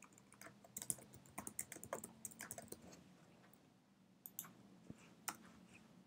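Faint typing on a computer keyboard, a quick run of keystrokes for about three seconds, then a few single clicks.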